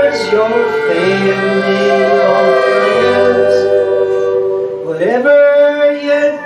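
Live band music in a slow, sustained passage: long held notes over an electric bass line, with pedal steel guitar and a mouth-blown keyboard in the band. One held note slides upward about five seconds in.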